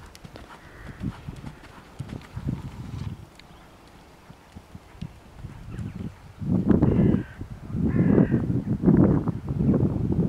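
A horse moving on a soft arena surface: muffled hoofbeats at first, then, in the last few seconds, louder rhythmic bursts about once a second.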